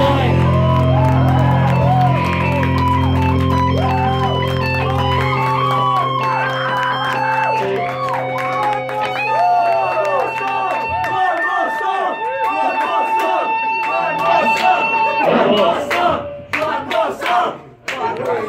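Live rock band's final electric guitar and bass chords held and ringing while the audience cheers and whoops over them; the low notes drop out about halfway. Near the end the ringing stops and a few sharp knocks follow.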